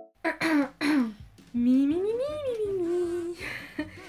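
A woman's voice: two short vocal sounds, then one long hum whose pitch rises and falls back, ending in a short breathy hiss.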